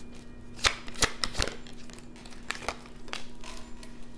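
Tarot cards being handled and shuffled: a few sharp snaps of the cards in the first second and a half, then lighter flicks and rustling.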